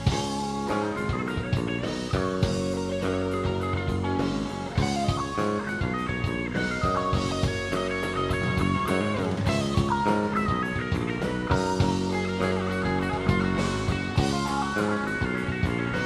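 Live rock band playing an instrumental passage with no vocals: electric guitars over bass guitar and drum kit.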